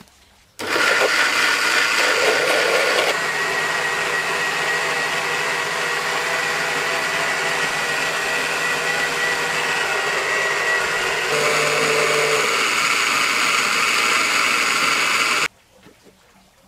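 Two electric mixer grinders with stainless steel jars blending milk and chocolate into a milkshake. The motors start suddenly under a second in and run loud and steady, with the tone shifting about three seconds in and again near eleven seconds. They cut off abruptly just before the end.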